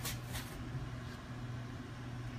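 Steady low room hum, with two brief clicks in the first half second and a fainter one just after a second in.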